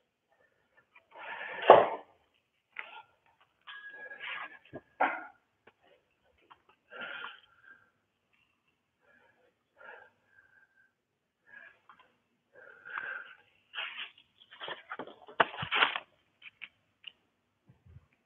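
A metal thurible (censer) being loaded with incense and swung: its chains and lid clink and clank in scattered bursts, with one short ringing note about four seconds in, a louder clank about two seconds in and a busier run of clinks near the end.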